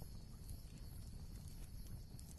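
Faint steady low rumble with light hiss, no distinct event.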